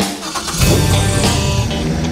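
An airboat's engine starting up and revving, with background music playing over it.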